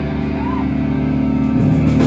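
Electric guitars through amplifiers holding a steady, loud ringing chord, with the low notes changing near the end. A short voice rises over it about half a second in.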